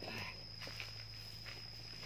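A few soft footsteps on dry, sandy ground, over a steady high-pitched insect tone.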